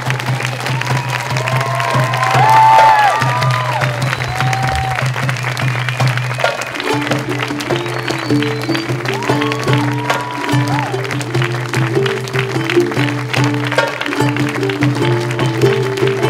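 Audience applauding with scattered whoops, over music with a steady low drone; about seven seconds in, a plucked-string melody joins the music.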